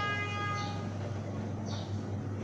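A single steady pitched tone, horn-like, held and then stopping about a second in, over a constant low hum.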